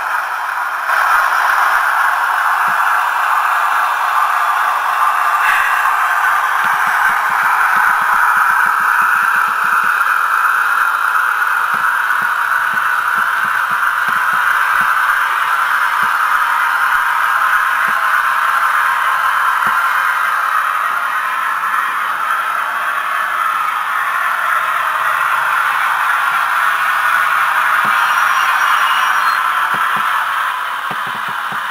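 Sound decoder in a Hornby OO gauge Class 50 diesel model playing the locomotive's engine sound through its small onboard speaker while the model runs. A steady, thin running note without bass that swells and eases slowly.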